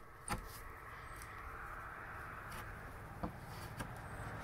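A few faint clicks and scrapes of a steel claw hammer working small wallpaper tacks out of an old wooden board, over faint steady background noise.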